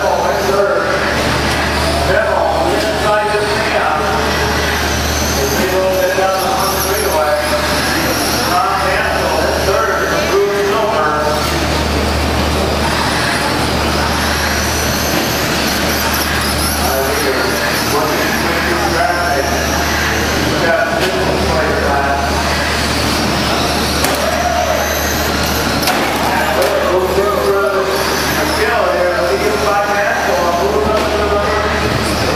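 Electric short course RC trucks racing on a dirt track, their motors whining up and down in pitch as they accelerate and brake. Indistinct voices talk over them, with a steady low hum underneath.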